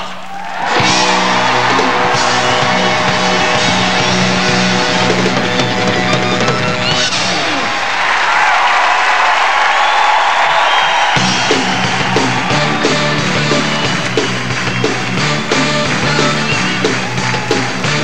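Loud rock music from a band; the low end drops out for a few seconds midway, then the full band comes back in.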